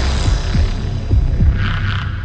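Logo intro music: a deep, throbbing bass drone with low thuds, and a brief higher shimmer near the end.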